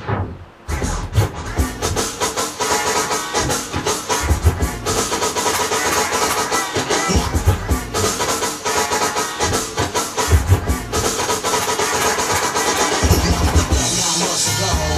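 Turntablist routine played on turntables and a DJ mixer: a drum beat with record scratching and quick cuts. The music drops out for a moment just after the start, then comes back in.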